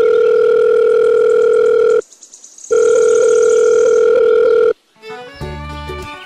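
Telephone ringback tone from a phone call: two long steady beeps of about two seconds each, with a short break between. Music starts near the end.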